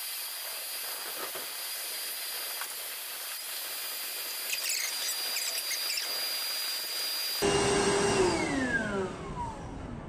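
Small battery-powered shop vac running steadily with a high whine as it sucks loosened dirt out of a planter seed meter. About seven seconds in it is switched off, and the motor winds down with a falling pitch.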